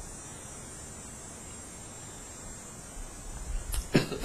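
Quiet room tone with a steady hiss from a handheld microphone. Near the end come a few low bumps and a sharp click.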